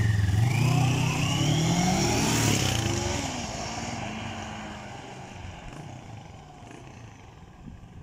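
CFMOTO NK650 parallel-twin engine accelerating away, its revs rising over the first few seconds, then fading steadily as the motorcycle gets further off.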